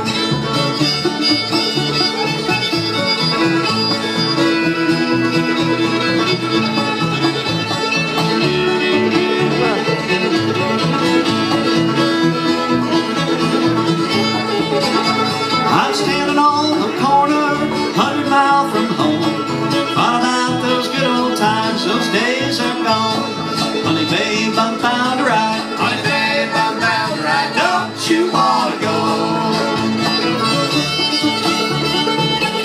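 String band of fiddle, banjo, acoustic guitar and upright bass playing an instrumental passage without singing, in a bluegrass or old-time style.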